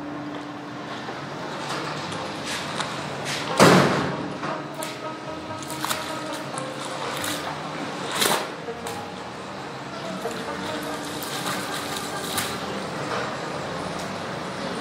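Water running from a garden hose onto wet laundry on paving, with wet squelches and slaps as the cloth is trodden and handled; the loudest slap comes near four seconds in and another near eight seconds. Faint music plays underneath.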